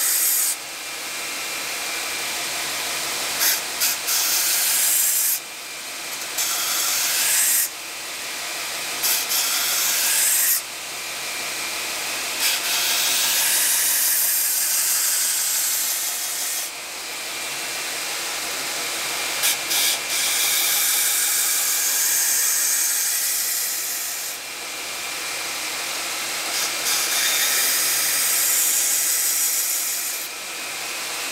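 Belt grinder running a 120-grit belt while a knife's edge is ground against it to sharpen it and blend in a reshaped tip. The grinding hiss comes in repeated passes a few seconds long, each building up and then breaking off suddenly as the blade is lifted from the belt.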